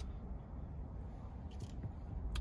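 Quiet, steady low rumble of a car cabin, with a faint tick or two of handling noise.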